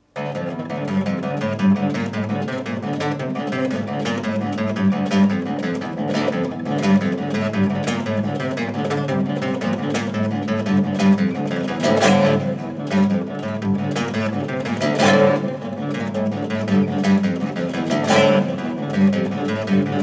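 Solo classical guitar with nylon strings, played fingerstyle in a continuous stream of plucked notes. A few louder accented strokes stand out in the second half.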